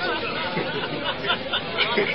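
Indistinct speech and chatter of several voices, with no other sound standing out.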